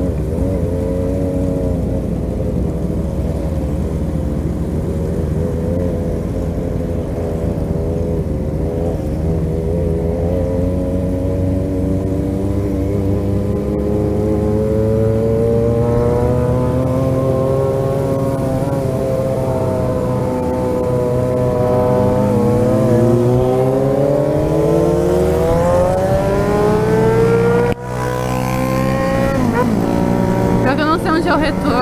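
Yamaha XJ6's 600 cc inline-four engine running under way, fairly even at first, then rising slowly in pitch over many seconds as the motorcycle accelerates. There is a short break in the sound near the end, after which the engine carries on.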